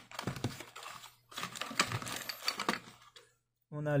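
A small white cardboard box being opened by hand, with quick irregular clicks and rustles of the flaps and packaging. It stops a little before the end.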